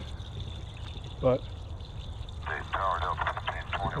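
Soapy wash water pouring steadily out of the open bottom drain valve of a plastic IBC tote and splashing onto the ground as the tank is drained.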